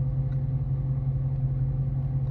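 Steady low rumble and hum inside a stationary car's cabin, its engine idling.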